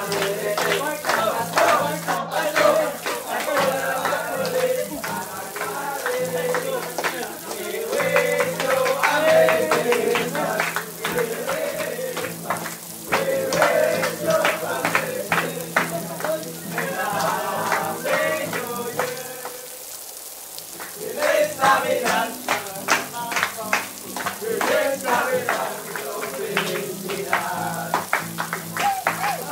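A group of young men singing a song together while clapping their hands in rhythm. The singing and clapping pause briefly about two-thirds of the way through, then start again.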